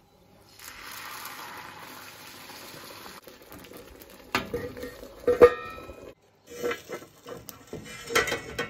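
Beaten eggs sizzle as they hit a hot frying pan, an even hiss for about two and a half seconds. Then a steel lid is set on the pan with two ringing clangs, the second the loudest, followed by clinking and scraping of a metal spatula against the pan and lid.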